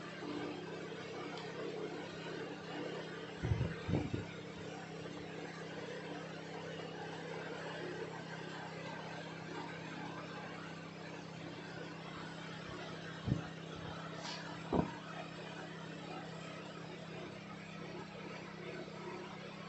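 Steady low background hum, broken by a few soft knocks as the phone is handled: a pair close together about four seconds in, and two single ones about ten seconds later.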